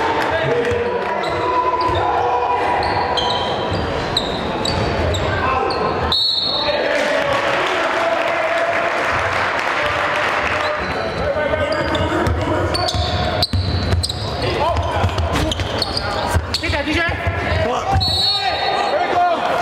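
Basketball game in a gym: crowd voices and chatter, short high-pitched sneaker squeaks on the hardwood court and basketball bounces. The sound breaks off abruptly twice, where clips are cut together.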